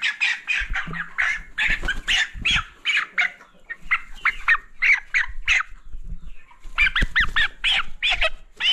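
A broiler chicken squawking over and over as it is caught and held, several loud calls a second with a short pause about six seconds in. A few dull thumps come from the handling early on.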